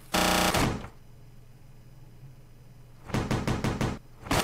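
A short, loud buzzy blast lasting about half a second, then a low hum, then a quick run of about seven knocks in the last second.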